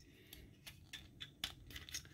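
About half a dozen faint clicks and taps from the plastic parts of a Transformers Studio Series 86 Jazz figure being moved and pressed into place by hand during its transformation.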